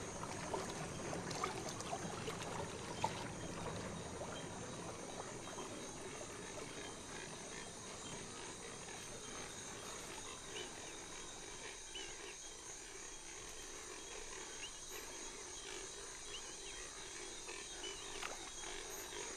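Faint outdoor swamp ambience: a steady soft hiss with a few faint high chirps in the second half and a single small tick about three seconds in.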